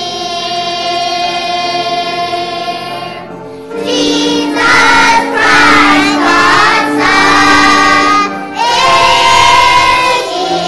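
A children's choir singing. A long held note comes first, then a louder passage of moving phrases with brief breaks begins about four seconds in.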